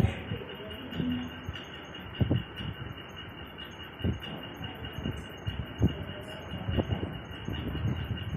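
Hall background noise with scattered dull knocks every second or two, no music or speech.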